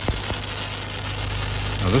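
Stick-welding arc running a downhill root pass on 12-inch steel pipe: a steady crackling hiss over a low hum, with a couple of sharp pops near the start. This is the even sound of the arc over a good root gap.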